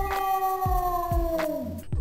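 A long howl held on one pitch that slides down and dies away near the end, over a steady low thudding beat of about three a second.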